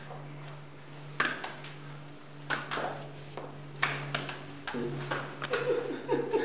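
Apples being tossed and caught by hand, a scatter of short sharp slaps and knocks a second or so apart, over a steady low hum. Voices and laughter start to rise near the end.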